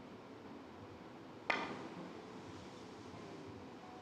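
A single sharp click of a three-cushion carom billiard shot about one and a half seconds in, a cue tip and ivory-hard balls striking, fading quickly; the rest is faint hall tone.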